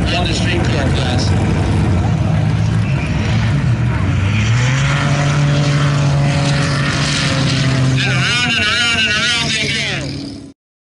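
Drag-race pass: a 1987 Buick Grand National's turbocharged 3.8 L V6 running hard down the strip alongside another car. About four and a half seconds in the engine note steps up and then holds at one pitch instead of dropping for a shift, the sign of the transmission staying in first gear and failing to make the 1-2 shift.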